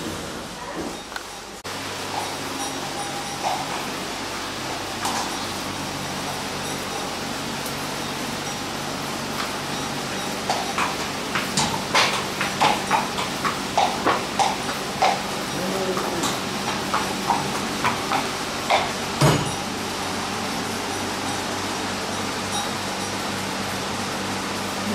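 A horse's hooves knocking on a concrete floor as it is led at a walk: a run of sharp, uneven knocks, one or two a second, through the middle of the stretch, over a steady background hum.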